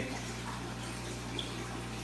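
Steady rush of water from the aquarium's filtration, with a low steady hum underneath.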